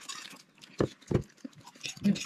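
People eating noodles at the table: slurping and chewing noises, with two short knocks about a second in.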